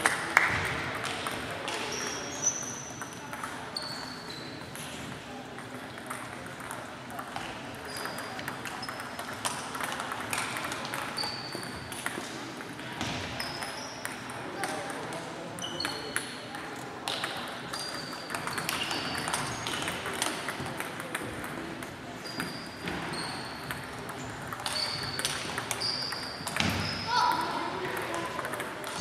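Table tennis balls clicking off tables and bats in rallies at several tables at once, a quick irregular patter of short, high pings in a large sports hall.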